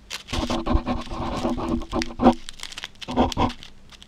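A metal spoon pressing and spreading soft almond cream into a perforated metal tart ring, giving a squelching squeak that lasts about two seconds, then a short second squeak about three seconds in.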